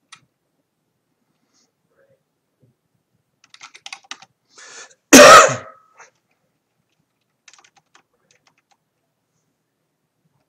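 Quiet computer-keyboard typing in a few short runs of keystrokes, with one much louder single cough about five seconds in, just after a short intake of breath.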